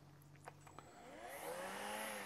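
MECO cordless handheld vacuum's motor: after a couple of faint clicks, it spins up about a second in with a rising whine. The whine peaks near the end and begins to wind down.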